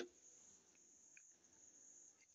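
Near silence, with only a faint steady high-pitched tone.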